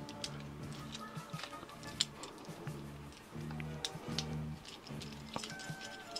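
Soft background music with held chords, over scattered small plastic clicks and taps as the parts of a Transformers Studio Series Wheeljack figure are moved and snapped together.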